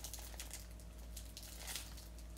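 Faint, scattered crinkling of a plastic packet of dried figs being handled and turned over.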